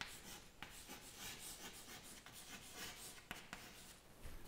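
Chalk writing on a chalkboard: a faint run of short, irregular scratching strokes.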